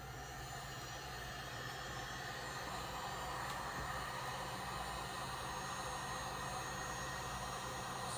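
Electric heat gun running steadily, a hiss of blown air over a low motor hum, as it shrinks plastic wrap around shampoo bars.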